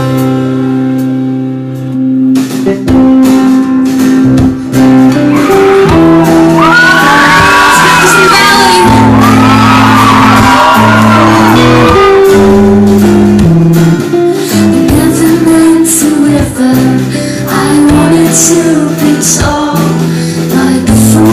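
Live band playing the opening of a song: acoustic guitar with keyboard, electric guitar and bass in a room. Through the middle of it the audience cheers and shouts.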